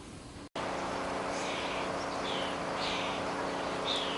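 Steady rush of floodwater with a low, steady hum underneath, starting abruptly about half a second in, with a few short bird chirps over it.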